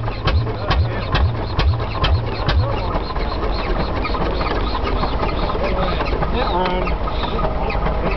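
Bull tractor engine, turned over by a flat belt, popping as it fires about twice a second, then stops firing about three seconds in, leaving a steady engine drone. It is hard-starting and won't keep running: it needs tinkering.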